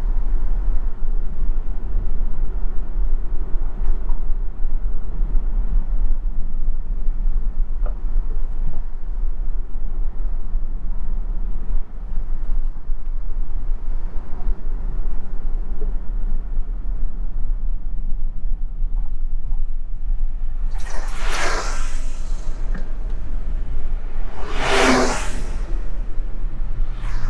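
Steady low rumble of road and engine noise inside a moving taxi's cabin, with two loud whooshes of vehicles passing close by near the end.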